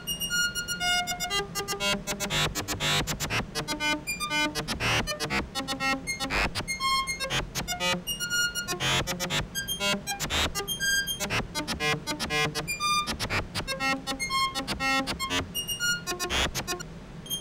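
MDA DX10 FM software synthesizer playing a steady run of short, clean FM notes at changing pitches, a few per second, with occasional brief pitch glides, as its octave setting is changed.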